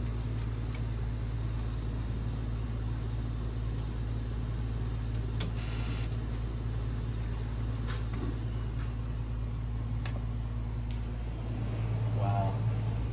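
A steady low hum while an Epson SureColor P4900 inkjet printer prints a photo. Its mechanism clicks now and then and gives a brief whir about five and a half seconds in.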